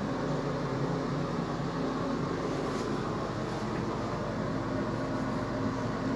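Steady hum of a room ventilation fan: an even low drone with a hiss above it.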